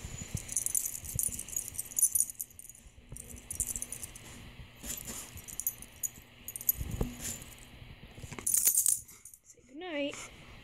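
Metal tags on a husky's collar jingling in repeated bursts as the dog is rubbed and shifts about. Just before the end the husky starts a short wavering whine.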